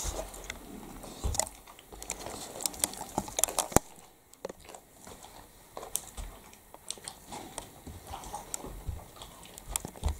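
A dog crunching and chewing a biscuit: irregular crisp crunches and clicks, thickest in the first four seconds, then sparser.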